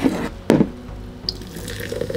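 Energy drink poured from an aluminium can into a glass, splashing steadily as the glass fills. The pour starts a little past the middle, after a single sharp knock about half a second in.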